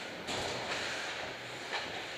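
Ice hockey skate blades scraping across the ice: a rough hiss that starts suddenly about a quarter second in, with another short scrape near the end.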